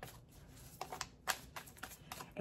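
Oracle cards being shuffled and handled: several light clicks and snaps of card on card, the loudest a little past halfway.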